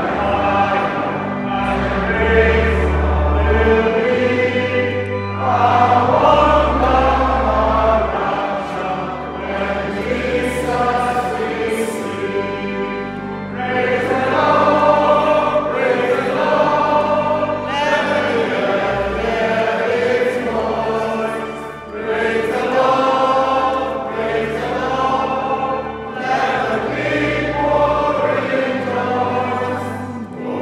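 A congregation sings a hymn together in a large church, over long held deep bass notes.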